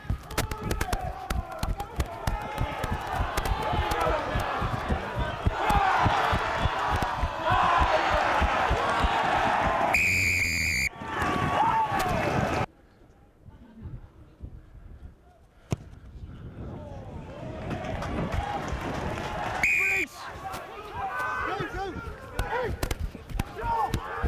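Players and spectators shouting and cheering as a try is scored, with a long, shrill blast of the referee's whistle about ten seconds in. After a sudden cut the sound drops low, then a second short whistle blast comes near twenty seconds in, followed by more voices.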